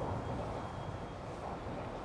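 Steady outdoor street ambience: a low, even background of distant traffic.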